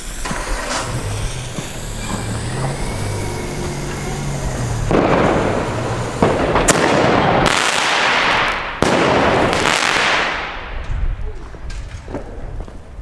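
A Lesli Bada Bang Bada Boom 30 mm single-shot firework tube firing after its fuse is lit. About five seconds in comes a loud hissing rush, then sharp bangs at about seven and about nine seconds, each followed by a long noisy burst that fades out near the end.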